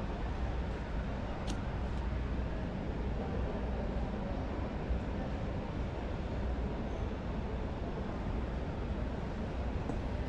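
Steady background noise of a large exhibition hall: a low hum under an even wash of distant noise, with one faint click about one and a half seconds in.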